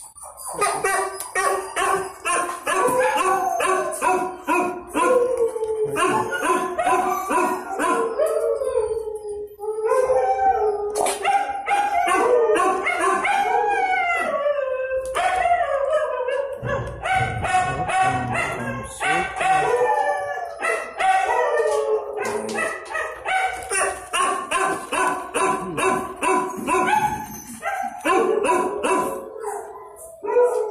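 Dogs barking and howling almost without a break: rapid barks, several a second, with drawn-out rising and falling howls among them.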